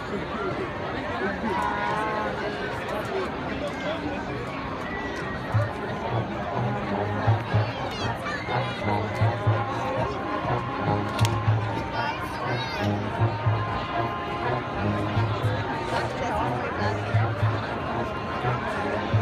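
High school marching band music over crowd chatter from the stands. About five seconds in, bass drums start a steady low beat, and held band tones join it a few seconds later.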